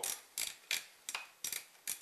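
Knurled magazine cap of a Mossberg 500 pump-action .410 shotgun being screwed down by hand to fix the barrel in place, ratcheting with about six sharp clicks at an even pace.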